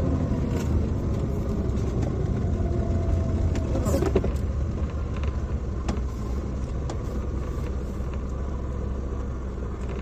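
Steady low rumble of a vehicle driving along, engine and road noise heard from on board, with a sharp knock about four seconds in.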